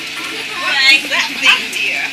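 A high-pitched voice calls out briefly in short pieces, its pitch sliding up and down, beginning about half a second in and loudest twice, over a steady background hum.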